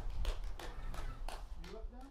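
Scattered handclaps from a small audience after a song, with a voice speaking briefly near the end.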